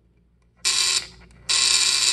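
Model T buzz coil buzzing in two bursts as the micro switch is pressed, firing sparks across the spark plug under test: a short buzz about half a second in, then a longer one from about a second and a half.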